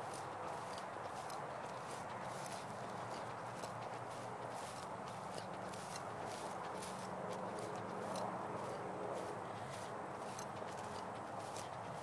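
Footsteps of a person walking through pasture grass, soft brushing crunches a few times a second over a steady even hiss.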